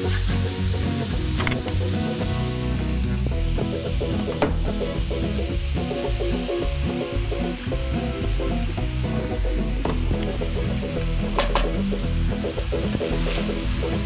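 Browned ground beef sizzling in a skillet as mushroom bisque is poured in, with a few sharp clicks along the way. Music plays underneath.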